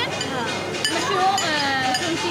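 A few sharp clinks of metal cutlery against china plates, over a steady background of voices.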